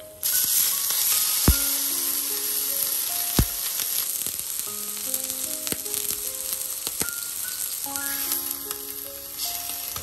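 Steak searing in hot oil in a frying pan: a loud, steady sizzle that starts suddenly, with two sharp pops of spattering fat about one and a half and three and a half seconds in. Soft background music with short melodic notes plays underneath.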